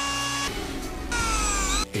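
Edited whirring and whooshing sound effects: a steady whine with hiss, then a whine that falls in pitch over a hiss, like a motor spinning down, over faint background music.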